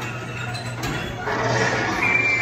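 Dark-ride sound heard from a moving car on Mr. Toad's Wild Ride: a steady low hum under the ride's soundtrack and effects, with a louder rushing swell in the second half.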